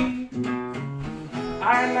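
Acoustic guitar strummed, ringing chords between sung lines, with a man's singing voice coming back in near the end.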